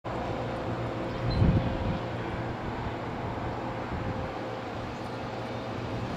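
Steady low outdoor rumble, like a vehicle engine or wind on the microphone, with a faint steady hum and a louder low surge about one and a half seconds in.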